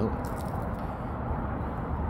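Steady low background rumble and hiss with no distinct event standing out.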